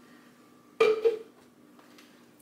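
A clear plastic Nutribullet cup set down on a marble countertop: one short clunk about a second in.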